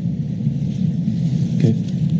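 Steady low rumble of background room noise on the meeting's audio feed, with a brief spoken 'okay' near the end.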